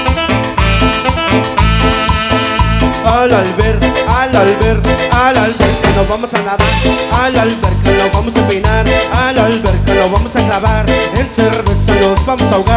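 A live cumbia band plays an instrumental passage over a steady beat: electric bass, drum kit, electric guitar, a Korg M1 keyboard and a metal güiro scraper. A lead melody with bending, sliding notes comes in about three seconds in.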